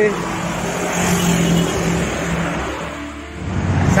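Road traffic going by at the roadside: trucks and motorcycles passing with a steady engine hum that is strongest about a second in and fades off before speech begins at the end.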